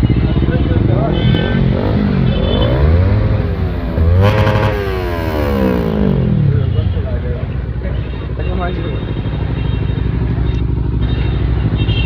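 Kawasaki Ninja 300's parallel-twin engine, fitted with an Akrapovic exhaust, running. Its revs rise to a peak about four to five seconds in and fall back over the next two seconds, then it runs on steadily.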